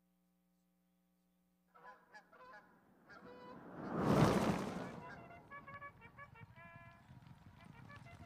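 Short honking calls starting about two seconds in, with a loud whoosh that swells and fades about four seconds in, then more short honks.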